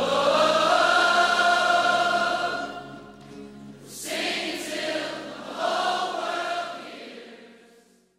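Background music of a choir singing long held notes, with a short lull about three seconds in, then fading out near the end.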